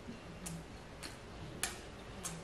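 Faint wet lip smacks and mouth clicks from someone savouring food: three short, sharp clicks about half a second apart, the last the loudest.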